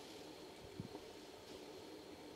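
Near silence: faint steady room hum, with one soft low knock a little under a second in.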